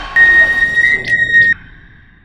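A high, steady electronic tone from the film's soundtrack, over a noisy music bed. It comes in just after the start, steps slightly up in pitch partway, and cuts off sharply about a second and a half in, leaving a short fading tail.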